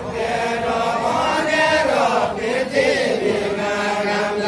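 A group of voices singing a deuda, the Far-Western Nepali folk song, together in a slow, drawn-out chant with no instruments.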